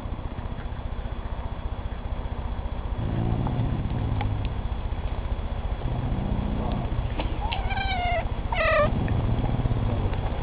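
Dog's low, stomach-like rumbling "growl" in several drawn-out stretches: his mild warning at kittens pestering him. A kitten meows twice near the end, two short falling calls.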